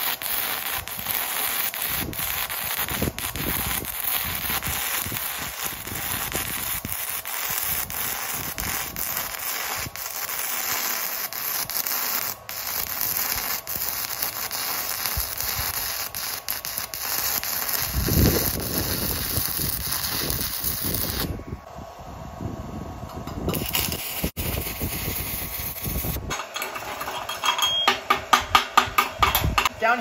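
Stick (shielded metal arc) welding an uphill pass with a 6013 rod on a small portable welder: the arc crackles and hisses steadily. The arc goes out about 21 seconds in and is struck again a few seconds later. Near the end comes a quick run of ringing metallic strikes as a chipping hammer knocks the slag off the steel.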